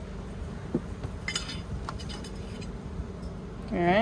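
Glass bong parts being handled: light ticks and a single brief, high-pitched glass clink with a short ring about a second and a half in. A short vocal sound comes right at the end.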